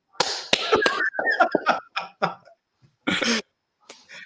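A man laughing and clapping his hands, a few sharp claps in the first second, with laughter going on in bursts after them.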